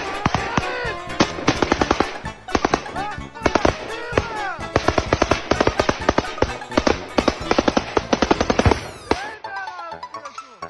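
Bursts of rapid automatic rifle fire, many rounds in quick succession, with men's voices shouting between and over the bursts. The firing stops about nine seconds in.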